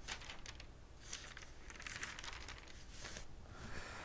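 Faint rustles and swishes of thin Bible pages being turned by hand, several short sweeps over a few seconds.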